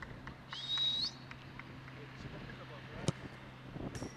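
A football kicked once: a single sharp thud about three seconds in, over quiet outdoor background. A short rising high-pitched chirp sounds about half a second in.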